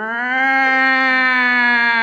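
A man's voice imitating a tornado warning siren: one long, loud wail that swoops up, then holds and sags slightly in pitch.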